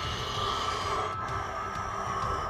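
Quiet background music, with a man's breathy, wordless sigh-like sound: a zombie impression.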